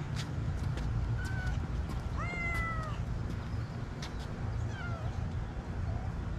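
An animal calling a few short times, with one longer arching call about two seconds in, over a steady low outdoor rumble. A few faint sharp taps are also heard.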